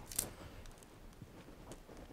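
A knife blade wedged in a Tonkin bamboo culm splits it along the grain at a node: one short sharp crack just after the start, then faint ticks of the fibres parting.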